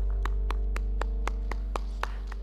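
A live band's held keyboard chord slowly fading out, with single sharp hand claps in an even beat of about four a second.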